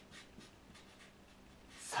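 Felt-tip marker writing Japanese characters on a paper map: a run of faint, short scratching strokes.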